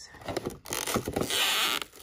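Rustling and scraping of a perfume gift box's plastic tray and shredded gold filler as the bottle is handled and lifted out, with a few small clicks, building to a denser rustle about a second in.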